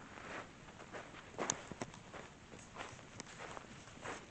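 Footsteps on gravel, about two steps a second, with one sharper click about a second and a half in.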